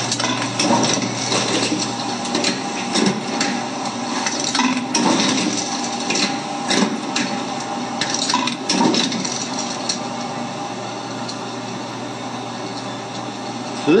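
Bourg SBM booklet maker running sets through its stitch, fold and trim stations: a steady hum with irregular mechanical knocks and clatter, easing off a little in the last few seconds.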